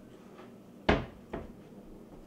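Two sharp knocks about half a second apart, the first louder and ringing on briefly, like something wooden being shut or struck.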